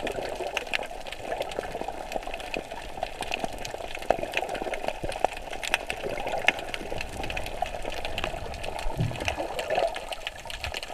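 Water heard from below the surface: a steady muffled wash with many small crackling clicks, and a low bubbling burst near the end.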